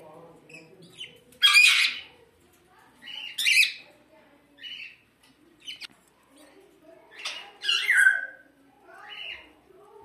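Caged birds squawking: a few loud, harsh squawks, the loudest about one and a half seconds in, others around three and a half and eight seconds, with shorter chirps between.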